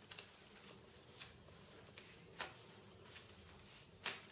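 A few faint, scattered crackles and clicks from a plastic sheet of pressure-sensitive laminate being handled as its release liner is peeled back, the sharpest about two and a half seconds in.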